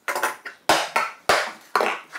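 Four sharp knocks, a little over half a second apart, each with a brief ring: a metal bench clamp being set into a dog hole and knocked against the wooden workbench top.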